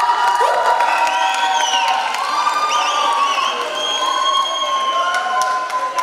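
An audience in a hall cheering and shouting, many voices calling out at once, loud and steady.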